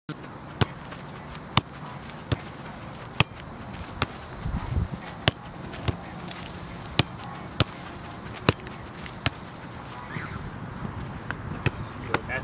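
Soccer ball being struck and caught in a goalkeeping drill: a series of sharp thuds of ball on boot and gloves, roughly one a second, over steady outdoor noise.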